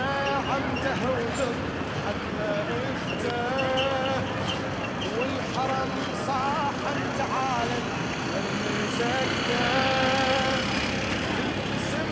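Steady din of a large crowd walking along a road, with voices calling out every few seconds in long, drawn-out tones.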